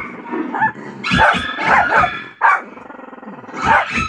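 Dogs barking in several short bursts: a pet dog barking back at dogs barking on a television.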